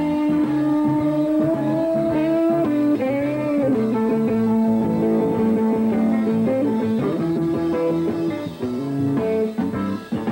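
Live band playing an instrumental blues-rock passage: an electric guitar holds long notes with string bends, backed by bass and a drum kit.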